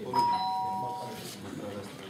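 Electronic two-note chime, a higher note followed a moment later by a lower one, both ringing together for about a second before stopping: the conference voting system signalling the close of the vote.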